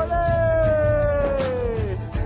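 Background song: a singer holds one long note that slowly falls in pitch, over a steady beat.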